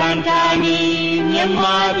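Music: a group of voices singing a Burmese song, holding long notes that step up in pitch about one and a half seconds in.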